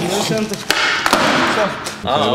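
A skateboard clacking on a concrete floor: one sharp knock about a third of the way in and lighter knocks after it, among talking voices.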